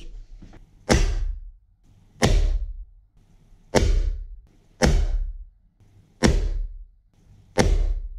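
Six air rifle shots firing lead pellets into a block of ballistic gel, about one to one and a half seconds apart. Each is a sharp crack with a short fading tail, over a faint low hum.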